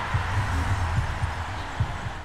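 Produced outro sound effect: a steady rushing noise over a deep rumble, with a few soft low thumps pulsing through it.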